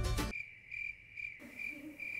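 Cricket chirps used as a comedy sound effect for an awkward silence after a joke: a thin, high chirp pulsing several times a second. It comes in once the background music cuts off, a moment in.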